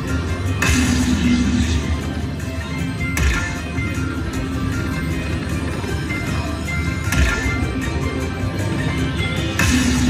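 Dragon Link slot machine playing its hold-and-spin bonus music, with a louder burst of game sound about every three seconds as the bonus reels spin and new coin symbols land.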